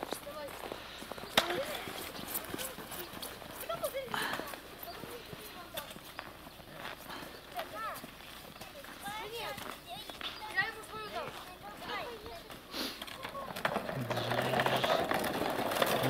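Faint children's voices and scattered crunching footsteps in packed snow, then a scraping swish that builds over the last two seconds as a child slides down an icy snow slide.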